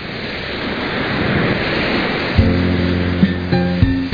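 Ocean surf swelling in as a steady wash, then about halfway through, music enters over it with held low chords and a few drum hits.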